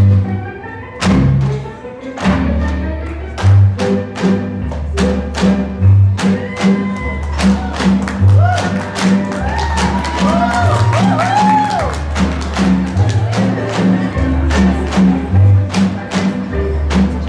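Tinikling dance music with a bouncing bass line. Over it, pairs of bamboo poles are knocked together and against the floor in a steady beat, about three sharp knocks a second.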